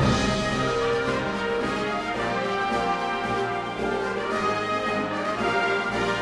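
Symphonic wind band playing live, holding sustained chords with the trumpets and French horns prominent.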